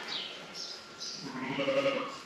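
A sheep bleating once, a call of about a second that starts halfway through and grows louder toward the end.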